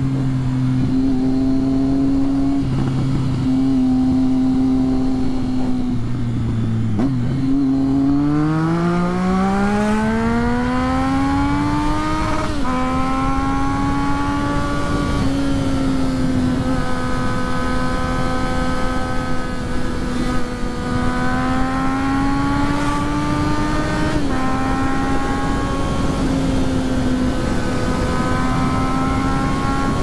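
Triumph Street Triple 675's inline three-cylinder engine, heard over wind rush on the microphone. It runs steadily, then accelerates from about seven seconds in, rising in pitch for several seconds until a sudden drop at an upshift. After that it cruises with small rises and dips in pitch.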